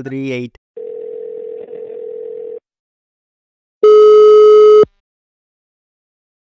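Phone call-progress tones from a mobile phone placing a call: a steady tone for about two seconds, then after a pause one loud, harsh beep lasting about a second. The call is to a number that is not in service.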